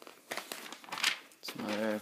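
Paper pages of a booklet being turned, rustling and crinkling for the first second or so, then a boy's voice starts speaking near the end.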